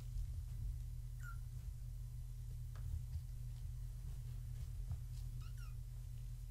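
Young kittens, about three weeks old, mewing faintly: one short high mew about a second in and two more close together near the end.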